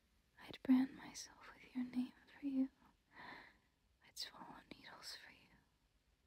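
A woman whispering softly and close to the microphone, in two phrases with a short pause between them.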